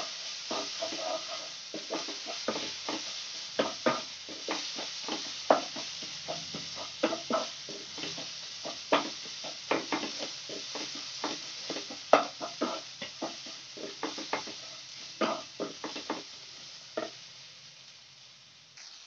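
Wooden spatula scraping and knocking against a nonstick kadhai as an onion-and-spice masala is stirred, over a steady sizzle of the masala frying. The strokes come irregularly, one or two a second, and stop shortly before the end as the sizzle fades.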